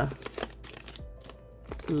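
A laminated vinyl cash envelope being handled: a few light plastic crinkles and clicks. Faint background music runs under it.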